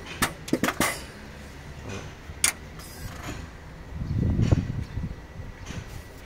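Electric turbo actuator on an IVECO Stralis engine working the turbo's butterfly at ignition-on: a few light clicks, then about a second of low mechanical buzzing some four seconds in as the linkage moves. The butterfly has just been freed after seizing, and now works correctly.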